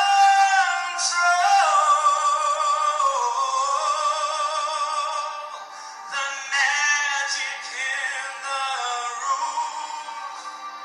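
A man singing long held notes over backing music. The sound is thin, with little bass, as it plays through a computer's speakers.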